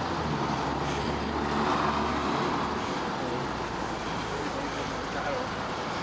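Road traffic noise: a motor vehicle's engine hum that drops away about two seconds in, over a steady wash of traffic sound, with faint talk underneath.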